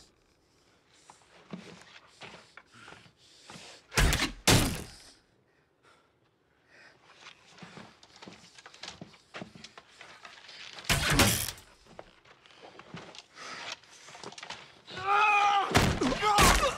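Arrows thudding into a wooden shield: two heavy impacts close together about four seconds in and another about eleven seconds in. A man's shout near the end.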